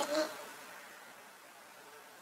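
A voice ends a word at the very start, then only a faint, steady room hiss.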